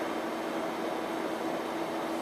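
Steady room tone: an even hiss with a constant low hum running under it, unchanging throughout.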